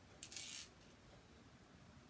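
One brief scrape, about half a second long, as a multi-tool spreads chalk paste across a silk-screen transfer. Otherwise near silence.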